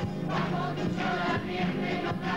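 A large group of children and adults singing a folk song together in chorus over many strummed acoustic guitars, with the strums falling about twice a second.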